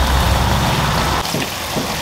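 Raw minced mutton sizzling in hot oil with fried onions in a large cooking pot. A steady low hum sits under the sizzle and cuts off a little past halfway.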